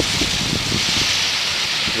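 Wind buffeting the microphone in a breeze of about 10 mph: a steady hiss with irregular low rumbling thumps.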